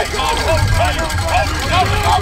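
Football players and sideline voices shouting short calls over one another at the line of scrimmage before the snap, over a steady low rumble.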